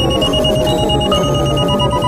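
Avant-garde electronic music: a high, rapidly pulsing synthesizer tone over sustained tones and a dense, rhythmic low bass pattern.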